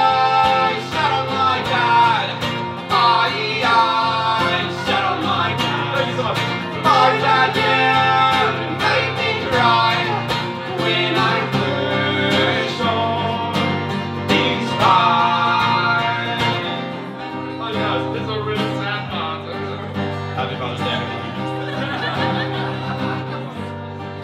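A live song on strummed acoustic guitar with keyboard and sung vocals. The music gets quieter for about the last third.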